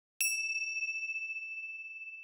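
A single high, bell-like ding struck once just after the start, ringing on as a clear tone that slowly fades. It is an edited-in transition chime.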